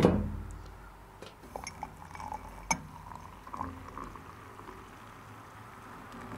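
A loud knock as the metal kettle is handled on the small stove, then a few light clinks and the faint sound of hot water being poured from the kettle into a ceramic mug.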